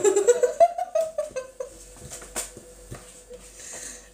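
A woman's drawn-out wordless voice sound that rises and then falls in pitch over about the first second and a half, followed by a few light clicks and taps.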